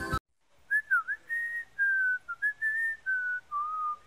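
A short whistled tune of about ten notes, some sliding into the next, moving up and down and settling lower near the end. It follows the abrupt end of a piece of music at the very start.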